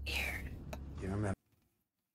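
Dark TV-show soundtrack: a low drone with a falling whoosh and a whispered voice. It cuts off abruptly a little over a second in, leaving silence.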